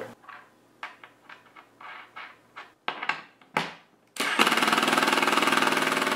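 A few faint clicks and knocks of parts being handled, then about four seconds in a Milwaukee M18 cordless impact driver hammers for about two seconds and stops sharply. It is running a nut down onto a carriage bolt to lock the bolt into the splitter.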